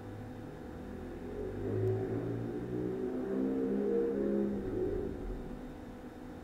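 A motor vehicle passing, rising from about a second in and fading out before the end. Its pitch shifts in steps as it goes by.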